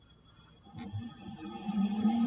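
Small electric motor of a belt-driven rotor balancing rig starting and spinning the rotor up, growing steadily louder, with steady high-pitched whining tones above it. This is the run-up for a vibration check after a correction weight has been fitted to the rotor.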